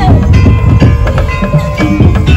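Loud percussion music: a steady beat of drums and knocking wood-block-like strokes with ringing bell-like tones over it.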